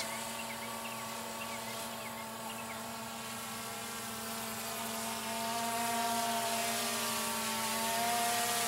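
DJI Phantom 2 quadcopter's four motors and propellers buzzing steadily in flight overhead, a whine of several tones together that grows a little louder and shifts slightly in pitch about halfway through.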